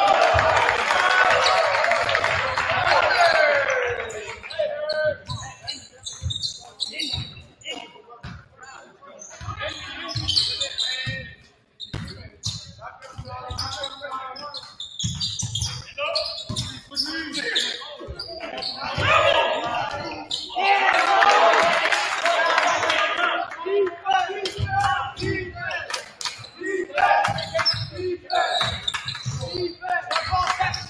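Basketball bouncing on a hardwood gym floor during play, many short thuds throughout, with echoing voices of players and spectators that swell loudly near the start and again about two-thirds through.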